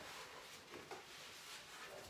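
Near silence: room tone with faint rustling and handling noise from the swing's straps and clothing as the body settles into the swing.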